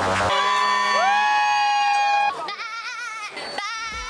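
A chord of steady electronic tones, several sliding up into place, held for about two seconds and then cut off, followed by a warbling pitched tone with a fast wobble.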